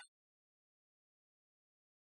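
Dead silence, with no room tone at all; the audio track is empty after the tail of a spoken word at the very start.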